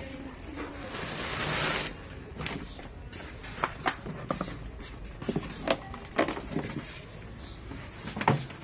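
Cardboard box and polystyrene foam packing handled as a printer is worked out of its box: a rustling scrape about a second in, then a series of short, sharp knocks and clicks.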